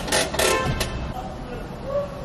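Brief speech in the first second, too indistinct for the transcript, then quieter, with faint music underneath.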